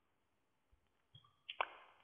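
Near silence: quiet room tone, with a faint short click about a second and a half in.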